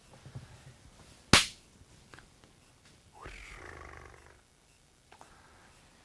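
One sharp hand clap about a second in, followed a couple of seconds later by a softer rustle lasting about a second.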